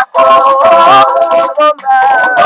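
Group of male and female voices singing a Bundu dia Kongo song, with short breaks between phrases.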